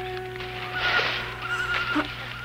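Suspense film score: low held notes under a high, wavering tone that comes in under a second in.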